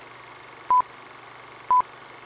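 Two short electronic beeps at one steady pitch, a second apart, over a faint steady hiss.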